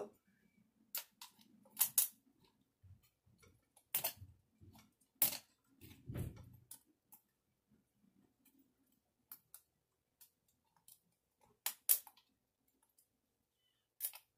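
Metal tweezers clicking and scraping against the edge of an adhesive-backed diamond painting canvas in its frame: a scattering of short, sharp clicks with quiet gaps between, and a soft handling rustle about six seconds in.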